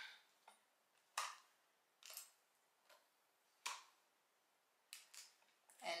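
About five faint, brief swishes a second or so apart: a plastic comb drawn through straight wig hair.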